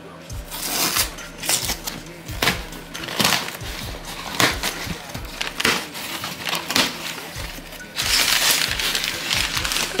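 Packing tape being peeled and ripped off a cardboard shipping box, with the cardboard crackling and its flaps tearing open in a string of short sharp rips. About eight seconds in comes a longer, louder tearing stretch.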